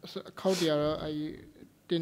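Speech only: a man's voice says one short phrase about half a second in, then pauses.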